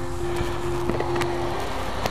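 Honda VFR800's V4 engine idling steadily in neutral, a constant low hum.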